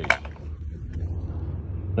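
A single sharp click just after the start, then a steady low hum.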